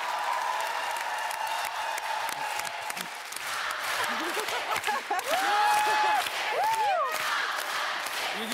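Studio audience applauding and cheering, with a few voices calling out over the applause in the second half.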